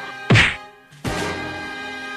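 Two punch-style fight sound effects over background music: a loud whack about a third of a second in, then a second, quieter hit about a second in.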